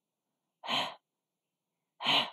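A woman's voice sounding the English voiceless glottal fricative /h/ on its own: one short breathy puff of air, just over half a second in.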